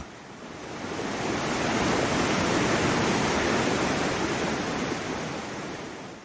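Rushing water of a rocky mountain stream, a steady hiss that fades in over the first two seconds and fades out near the end.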